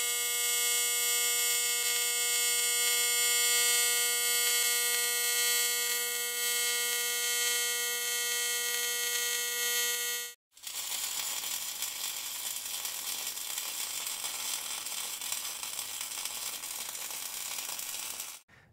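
TIG welding arc from a Canaweld TIG DC 202 Pulse D inverter welder running on one-eighth-inch mild steel: a steady pitched buzz with a hiss above it. About ten seconds in it stops suddenly and gives way to a stick-welding arc on quarter-inch mild steel, crackling and sizzling.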